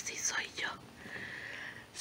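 A woman whispering softly, breathy with no voiced pitch, followed by a faint steady high tone lasting about a second.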